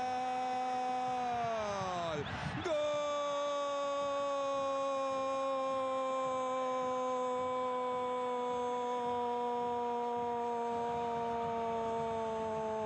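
A Spanish-language football commentator's long drawn-out goal cry, 'gol' sung out on one held note. About two seconds in the pitch slides down, and after a quick break he holds a second note that sinks slowly for about ten seconds.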